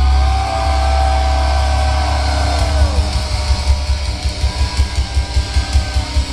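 Industrial metal band playing live at full volume: distorted electric guitar holding long bent notes over heavy bass. About halfway through, a pounding drum beat starts at roughly three to four hits a second.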